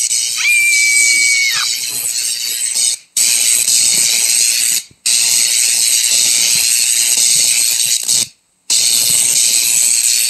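Harsh, loud hissing noise in stretches of two to three seconds broken by short silences, with a brief steady high whistle about half a second in.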